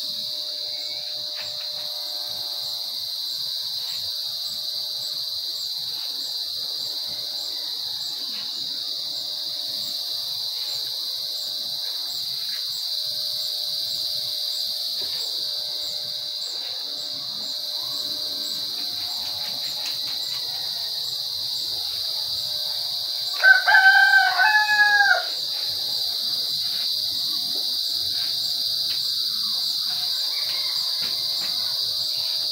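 A rooster crows once, loud and about a second and a half long, near the end, over a steady high chirring of insects. Underneath, corded electric hair clippers hum as they cut.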